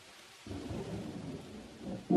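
Rain falling, fading in, with a low roll of thunder that starts about half a second in.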